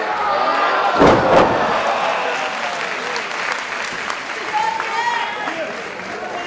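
A wrestler's body slammed onto the ring mat about a second in: a heavy thud with a second hit right after. Crowd shouts and applause follow.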